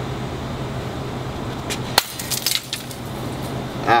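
A breakaway prop bottle smashed over a person's head: one sharp crack about two seconds in, followed by a brief clatter of breaking pieces.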